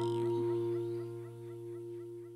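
The last chord of an acoustic pop song ringing out and fading, held on the keyboard with the acoustic guitar's strum decaying under it.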